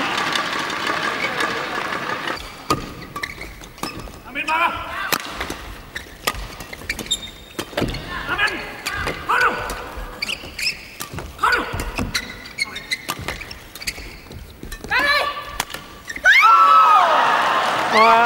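Badminton rally on an indoor court: sharp racket-on-shuttlecock hits and shoe squeaks, with players' short shouts between shots. About two seconds before the end, loud yelling breaks out as the point ends.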